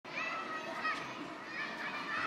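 Children's voices calling and chattering at a distance, one high child's voice clearest in the first second.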